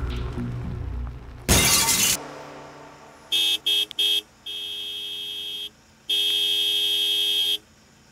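Dramatic background music fades out, broken by a loud, sharp burst of noise about a second and a half in. Then a car horn honks three short times, gives a longer softer blast, and finishes with a long loud blast.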